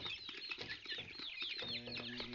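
A flock of young Kroiler chickens peeping continuously, many overlapping short falling chirps.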